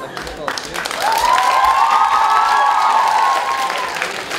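Comedy-show audience applauding and cheering in response to a joke, the clapping dense throughout. From about a second in, one long drawn-out cheer rises over the clapping and the whole gets louder.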